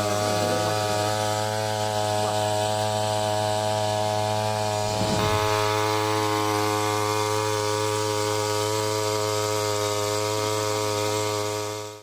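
Small backpack paddy-cutter engine running steadily at high speed on one even note, driving a water-pump head that lifts pond water and sprays it through a hose. There is a brief unsteadiness about five seconds in.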